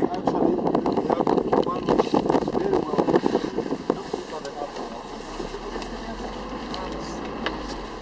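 A safari vehicle starting to move off, with its engine running and the cabin and camera rattling and knocking. About halfway through it settles into a quieter, steady low hum.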